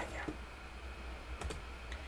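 A few light computer clicks, made as the slides are advanced, over a low steady hum.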